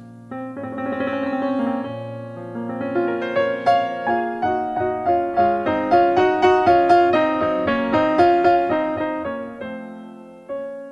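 Steinway grand piano played solo as a slow introduction. Held chords build, from about three seconds in, into a steady run of notes, loudest around six to eight seconds in, then easing off.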